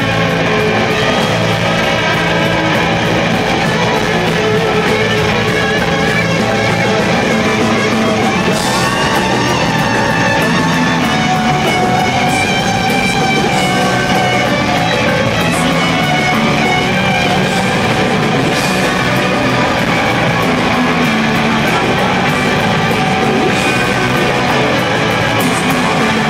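Electric guitar played loud through amplifiers in a rock jam, going on without a break.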